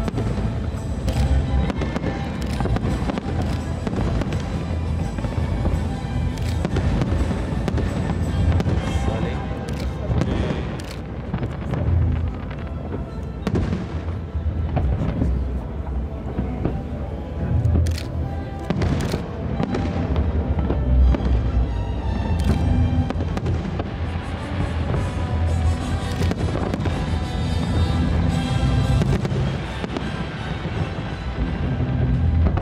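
Aerial firework shells launching and bursting one after another, with a dense rumble of reports and several sharp cracks standing out, while music plays alongside.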